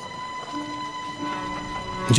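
Background score between lines of dialogue: a sustained droning chord, with a lower note that sounds twice for about half a second each.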